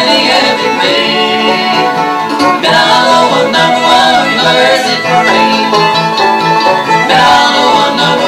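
Bluegrass band playing an instrumental passage: a mandolin and an acoustic guitar picking, with a fiddle.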